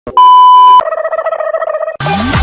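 TV test-pattern sound effect: a loud steady 1 kHz test-tone beep lasting about half a second, cut off sharply, then a buzzing electronic tone with a rapid flutter for about a second.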